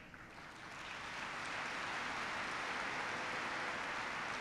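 Audience applause that swells over about the first second and then holds steady.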